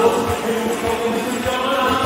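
Live worship music: sung vocals held over acoustic guitar, with a steady low beat about twice a second.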